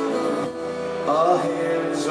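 Live rock band playing a slow song: held guitar-led chords between vocal lines, with a short sliding note about a second in.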